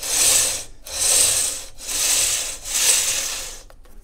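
Edge sander's belt sanding the end of a wooden guitar binding strip square, in four short strokes with brief pauses between, trimming it to a pencil line.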